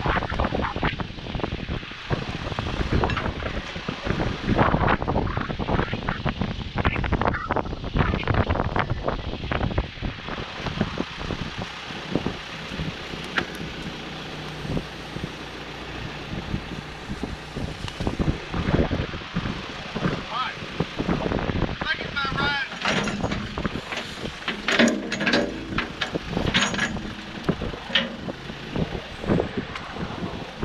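Ford backhoe's diesel engine running steadily under gusty wind buffeting the microphone, the wind heaviest in the first ten seconds. Indistinct voices come in near the end.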